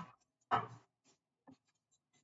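A pause in a man's narration: a short vocal sound about half a second in, then faint scattered clicks.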